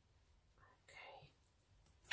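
Near silence, broken about half a second in by a brief faint whisper under the breath.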